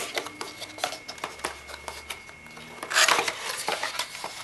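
Cardboard retail box being handled and opened: scattered light taps and clicks, then a louder scraping rush about three seconds in as the lid flap is pulled open.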